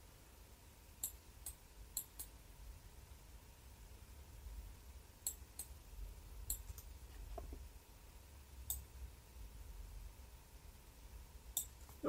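Computer mouse clicking, about ten faint single clicks scattered at uneven intervals over a low hum.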